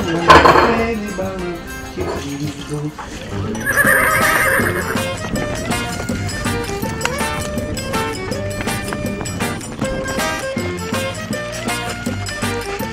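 Lively forró-style background music with a steady beat, over which a horse whinnies: a loud call just after the start and another, wavering call about four seconds in.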